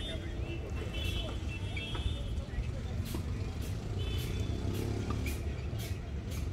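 Outdoor ambience: a steady low rumble with faint voices, a few short high chirps, and a run of short sharp ticks in the second half.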